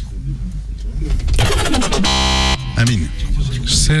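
An electronic blind-test game buzzer sounds once, a steady harsh tone of about half a second, a little after the middle, amid voices.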